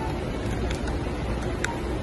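Steady low rumble of a car's interior, engine and road noise, with a few faint short ticks.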